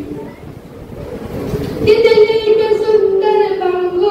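A boy singing a poem in a held, melodic chant. There is a short pause near the start, and he takes up the tune again about two seconds in, holding long notes.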